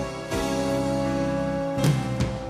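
Instrumental accompaniment between sung sections of a choral arrangement: held chords, with a new chord struck about a third of a second in and a short accent near the end.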